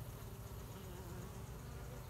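Honey bees buzzing at an open hive: a steady, even hum with no breaks.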